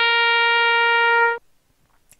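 The final long held note of a short brass fanfare, steady in pitch, cutting off cleanly about a second and a half in.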